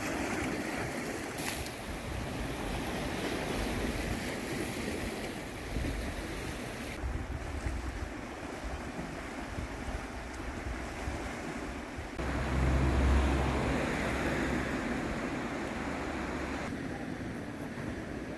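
Small sea waves washing against a rocky, pebbly shore, with wind on the microphone; a gust of wind rumbles about two-thirds of the way through, the loudest moment. The sound shifts abruptly a few times as the shots change.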